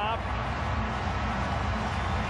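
Stadium crowd cheering a home-team touchdown, a steady wash of crowd noise carried on the TV broadcast sound.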